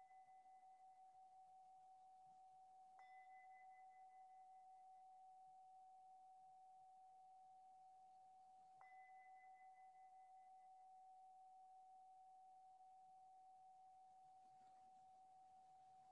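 Meditation bell or singing bowl ringing on faintly in one steady tone after being struck, with two soft further strikes about three and nine seconds in, marking the end of the sitting.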